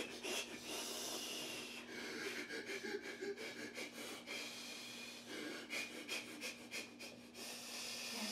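A man doing a calming breathing exercise: several long, deliberate breaths in and out to fight off a panic attack.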